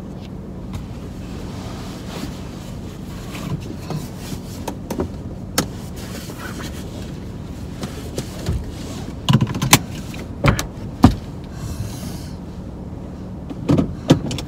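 Inside a car cabin a steady low hum runs throughout, with scattered clicks and knocks from someone moving in the driver's seat. About nine to eleven seconds in comes a cluster of louder, sharp clicks and knocks as the seat belt is pulled across and buckled.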